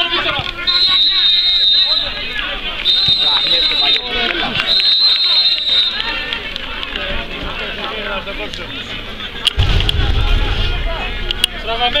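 Referee's whistle blown in three long, steady blasts, the signal typical of full time, over men shouting and crowd chatter. About ten seconds in there is a low rumble on the microphone.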